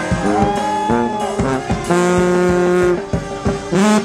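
A small marching brass band playing a tune, trombone prominent, with a long held chord for about a second midway through, over a steady beat.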